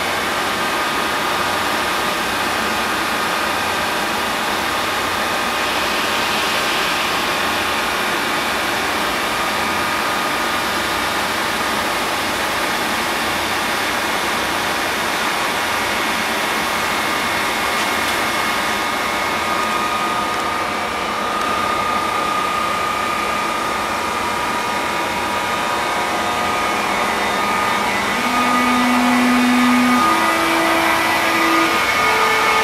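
Korail 8200-series electric locomotive 8207 standing with its equipment running: a steady whir with several high whining tones. Near the end, low tones come in and step up in pitch as the locomotive starts to pull away.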